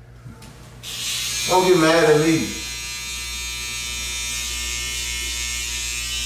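Electric hair clippers switch on about a second in, then run with a steady buzz while cutting at the hairline, with a brief voice sound over them.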